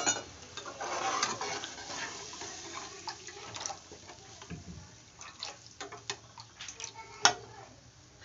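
A steel ladle stirring freshly added water through onion-masala gravy in an aluminium kadai. Splashing comes over the first couple of seconds, then scattered clinks and scrapes of the ladle against the pan, with one sharp clink near the end.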